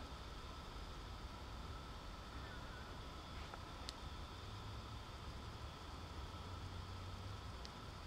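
Faint room tone: a low steady hum with a light hiss, and two tiny clicks, one about halfway through and one near the end.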